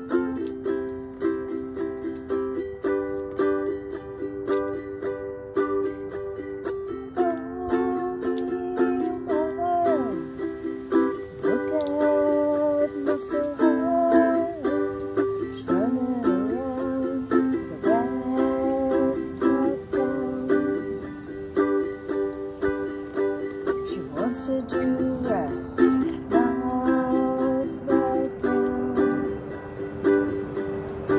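Ukulele strummed in a steady rhythm of chords. A woman's voice joins in over the strumming about seven seconds in.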